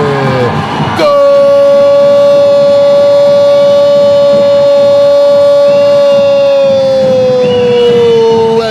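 Futsal commentator's long drawn-out "gooool" goal cry: one held shouted note that starts abruptly about a second in, lasts about seven seconds and sags slightly in pitch near the end.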